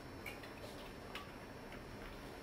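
Four faint, irregular light clicks or taps over a steady low room hiss.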